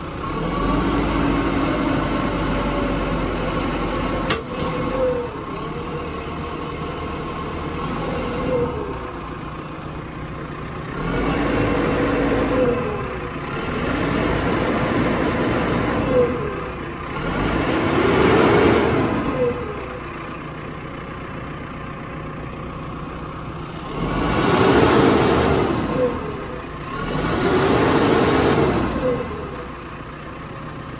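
2017 JCB 3CX backhoe loader's diesel engine running, with about six swells of one to two seconds each where the engine note rises and falls as the hydraulics are worked under load.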